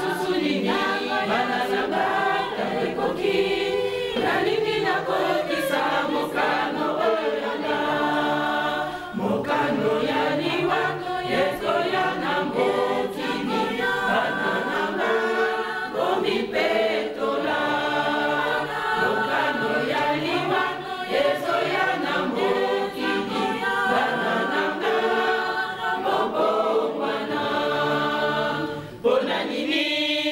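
A church choir singing together, a group of voices holding a continuous line with a short dip in level near the end.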